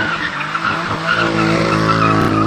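BMW M4's twin-turbo straight-six held at high, fairly steady revs while the rear tyres squeal continuously through a donut.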